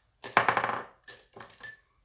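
Makeup brushes and tools clattering against each other as they are rummaged through: one burst of rattling about a quarter second in, then a few light clicks.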